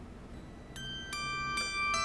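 Background music: after a brief lull, a few high plucked, bell-like notes come in one after another from about three-quarters of a second in.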